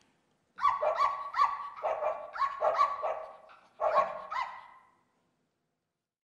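Dog barks: a quick run of short, high yaps, a brief pause, then two more.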